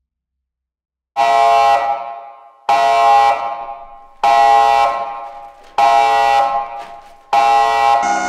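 Five loud, blaring horn-like blasts in a film soundtrack. Each starts suddenly, about a second and a half after the last, and fades away before the next.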